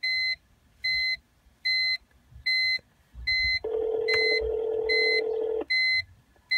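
An outgoing call from the BMW E46's built-in car phone ringing through the car speakers: one steady ringback tone lasting about two seconds, starting a little past the middle. The call is to *228, Verizon's phone-activation line. A short high electronic beep repeats about every 0.8 seconds throughout.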